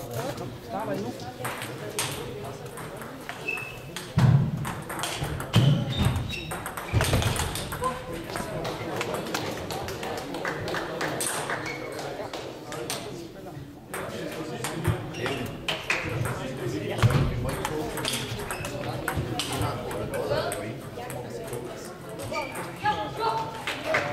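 Table tennis balls clicking against bats and tables, from the near table and the many tables around it, over a steady murmur of voices. A few dull thuds stand out about four, six, seven and seventeen seconds in.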